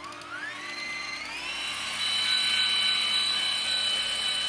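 Electric stand mixer starting up and whipping meringue (egg whites with sugar): its motor whine rises in pitch over about two seconds as it comes up to speed, then runs steadily.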